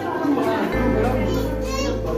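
Several adults and children talking at once over background music, with held notes and a bass line.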